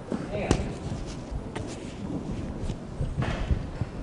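Handling noise on a live microphone: scattered light knocks and low thumps, with faint voices under them.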